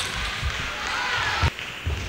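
Sports-hall ambience between table tennis rallies: a low murmur of the hall, with two short, soft thumps near the end.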